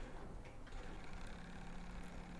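Faint workshop ambience: a low, even background hum, joined past the middle by a steady low tone.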